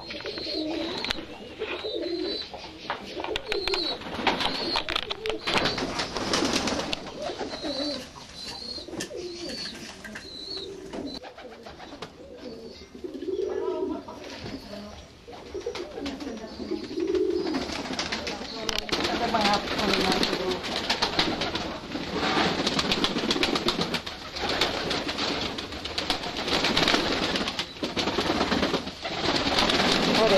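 Domestic pigeons in a loft cooing in low, rounded calls, over a high repeated chirp in the first ten seconds. A dense run of short clicks and rustles fills the second half.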